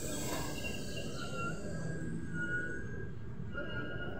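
LHB passenger coaches rolling slowly past along the platform: a steady rumble of wheels on the rails, with a few brief high-pitched squeals over it.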